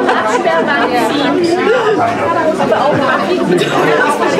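Several people talking at once: a steady chatter of overlapping voices.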